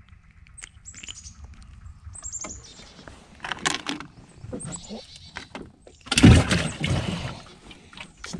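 Small birds chirping in short high, falling phrases over the quiet of a swamp. Light handling knocks and rustles in a small boat come with them, and a loud burst of noise about six seconds in as the caught bream is put away.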